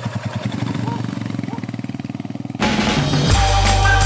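Royal Enfield Himalayan's 411 cc single-cylinder engine running at low revs with a fast, even pulse. About two and a half seconds in, it gives way abruptly to music with steady organ-like chords and deep bass.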